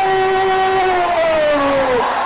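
A man's voice holding one long drawn-out call, in the sung style of kabaddi commentary. The note holds steady for about a second, then slides lower in pitch.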